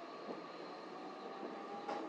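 Electric train pulling away from a station, heard inside the car: a faint motor whine slowly rising in pitch as it gathers speed, over steady running noise, with a single wheel clack near the end.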